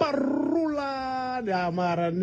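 A man's voice drawing out one long held note for about a second and a half, slightly falling in pitch, then dropping lower and carrying on in a speech-like way.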